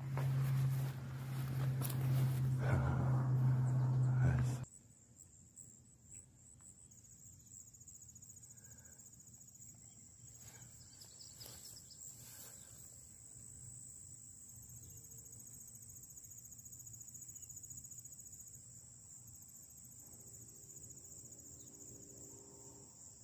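Insects chirring steadily at a high pitch in a summer grass field, faint and even. Before them, for the first few seconds, a much louder steady low hum with noise cuts off abruptly.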